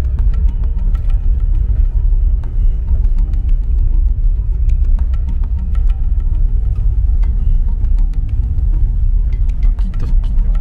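Steady low rumble of a car driving slowly along a rough dirt forest track, heard from inside the cabin, with scattered sharp clicks and knocks throughout. Background music plays over it.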